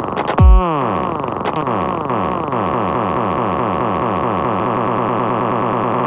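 Progressive goa (dirty prog) in a breakdown: one heavy kick drum about half a second in, then a synthesizer repeating rapid falling-pitch zaps with no beat under them.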